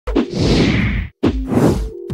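Two whoosh sound effects of an animated intro, about a second apart. Each opens with a sharp hit and carries a deep low rumble under a rushing hiss.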